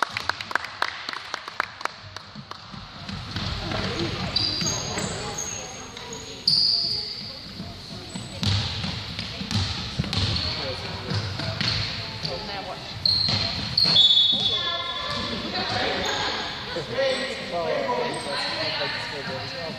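Basketball being dribbled on a hardwood gym floor, with a quick run of bounces near the start, and sneakers squeaking on the court. Voices call out and echo through the large hall.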